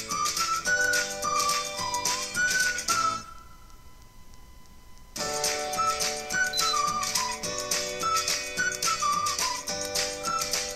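Music playing through a small Philips mini Bluetooth speaker: a high melody line that slides between notes, over steady sustained chords. About three seconds in, the music drops almost away for about two seconds, then comes back.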